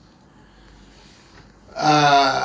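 A short pause with only faint background hiss, then near the end a man's voice breaks in loudly with a held, drawn-out vowel.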